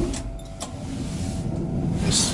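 1993 HEFA roped hydraulic elevator running: a light knock at the start, then a steady low rumble with a faint thin hum.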